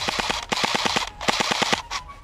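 Airsoft rifle firing on full auto in quick bursts of about a dozen shots a second, with brief breaks between bursts. The firing stops just before the end.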